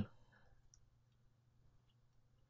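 Near silence: faint room tone with a steady low hum and a couple of very faint clicks.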